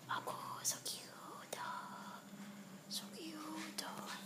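A person whispering softly in short, broken phrases, with a few faint hissy clicks between them.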